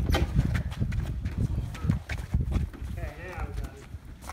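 Heavy wooden staircase riding on a caster dolly as it is pushed over pavement: a low rumble with irregular knocks and clacks, heaviest in the first two seconds.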